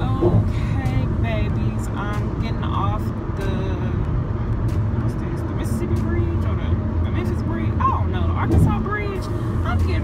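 Steady low road and engine rumble inside a Jeep Renegade's cabin while it drives on the highway, with a woman talking over it.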